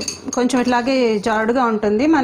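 A woman talking while a metal spoon clinks and scrapes against a glass bowl, pushing beaten egg mixture out into the frying pan.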